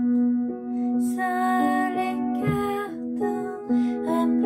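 Upright piano played slowly and softly, a gentle melody of held notes moving step by step.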